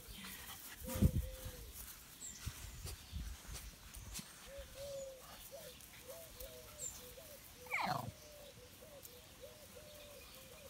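A faint series of short animal calls repeats from about halfway, with one louder call near the end. A sharp knock comes about a second in.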